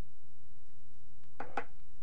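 Steady low hum of room tone, with one short voiced sound from the speaker, like an 'uh', about one and a half seconds in.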